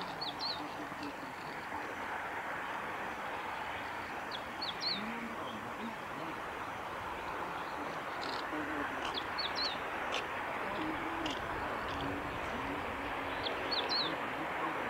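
Meadow bunting giving short, high chip calls in small clusters of two or three, a few times over several seconds, against a steady outdoor background hiss.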